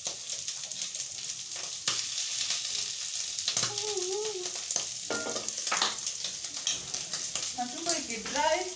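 Tripe sizzling as it dry-fries in a pot over a gas flame, a steady high crackle, with a few sharp knocks through it.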